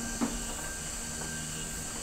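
A pause in the dialogue: steady soft hiss under a faint sustained background music tone, with a brief soft click about a quarter second in.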